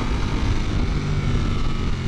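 Ducati Panigale V4S's V4 engine under way at speed on track, holding a steady engine note, heard from on the bike with wind rushing over the microphone.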